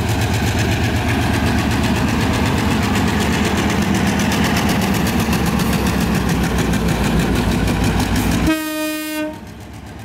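Diesel locomotive passing close, its engine running loud and steady with a fast, even beat. Near the end a short horn blast sounds, and then the sound falls away to a quieter rumble as the locomotive moves off with its wagons.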